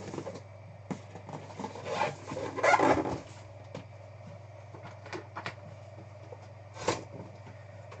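Large cardboard box being handled and slid across a desk: cardboard scraping and rubbing, loudest about two to three seconds in, with a few short knocks later as it is set on end.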